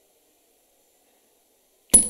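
Dead silence, broken near the end by a single sharp click, followed by a faint high-pitched tone.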